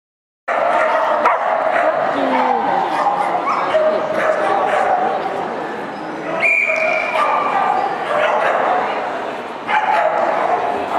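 A dog barking and yipping repeatedly amid people talking, in a large indoor hall, starting about half a second in after silence. A short, high, steady tone sounds about six and a half seconds in.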